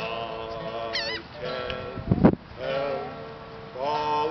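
A man singing to his own acoustic guitar, holding notes with vibrato. A brief, loud low thump cuts in a little over two seconds in.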